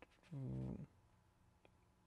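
A short, low hum from a man's voice, a closed-mouth "mm" lasting about half a second, a little after the start.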